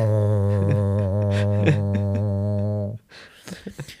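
A man humming a steady low drone for about three seconds, in imitation of a robot humming while it charges overnight; the hum cuts off suddenly.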